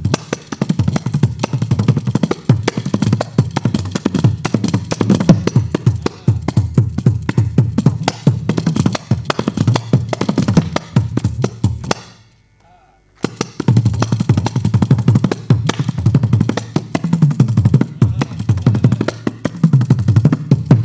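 Kanjira, the South Indian frame drum with a single pair of jingles, played in a fast passage of dense strokes with deep, bent bass tones. The playing stops dead for about a second just past the middle, then starts again.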